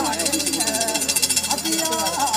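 Adi Ponung dance song: voices singing held, wavering notes over a fast, steady metallic jingling, the kind made by the iron-jingled yoksha rattle that the Ponung leader shakes to keep time.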